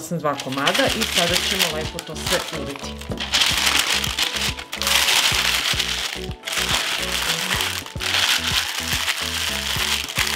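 Baking paper crinkling and rustling in long stretches as it is folded and pressed around a large piece of meat. Background music with a steady beat plays underneath.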